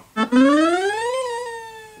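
Electronic keyboard playing a synthesized effect voice: a single pitched tone that glides steadily upward for about a second, then sags slightly and fades out.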